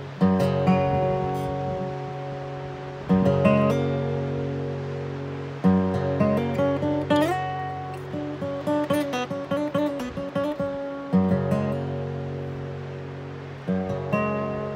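Steel-string acoustic guitar with a capo played fingerpicked: a chord struck every few seconds and left to ring out, with a quick run of picked single notes and slides in the middle.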